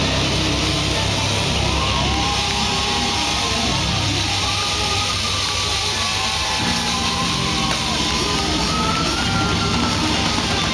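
Live rock band playing loud: long held low guitar and bass notes, with a melody line above them that glides up and down between notes.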